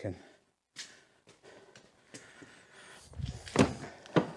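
Faint footsteps and light clicks, then one loud clunk about three and a half seconds in, as of the Citroën C6's driver's door being opened.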